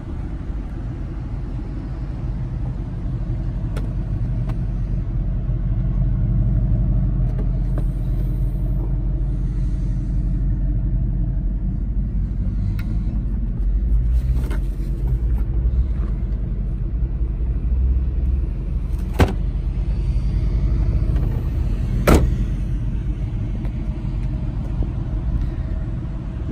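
A 2011 Ford Mustang GT's 5.0-litre V8 idling with a steady low exhaust rumble, heard close to the rear of the car. Two sharp clicks come about three seconds apart in the last third.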